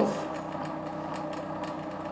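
Bedini SSG monopole energiser running: the pulsed drive coil and the spinning neodymium-magnet rotor wheel give a steady low hum with faint rapid ticking. The wheel is slowly gaining speed on its own.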